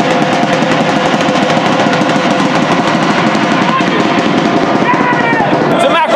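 A fast, continuous clatter of clicks, like rapid drumming, over steady held tones, with faint voices in the stadium.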